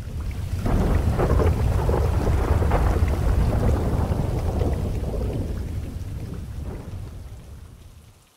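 A long roll of thunder over steady rain: the rumble swells in the first second, rolls on for several seconds and slowly dies away near the end.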